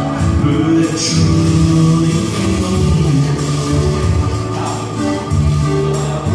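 Live music played on a Korg i3 keyboard, with a man singing over it through a microphone.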